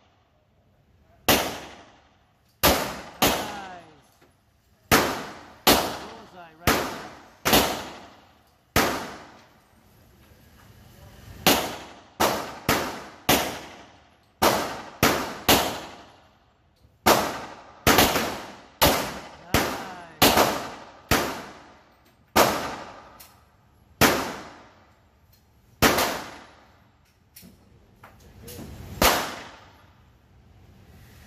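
Gunshots on an indoor firing range: a long irregular string of sharp cracks, about two dozen in all. Some come in quick clusters a fraction of a second apart, others after pauses of two or three seconds, and each ends in a short echoing tail off the hard range walls.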